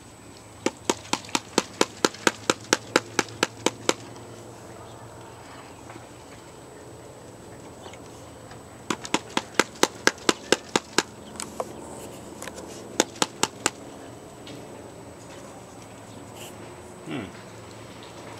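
Rapid sharp taps on a plastic gold pan, about five a second, in three runs: a long run near the start, another about halfway through and a short one near the end.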